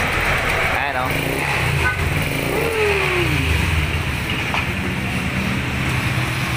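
Honda Click 125 scooter's single-cylinder engine started on its electric starter and running steadily at idle, showing that the no-start fault has been cured.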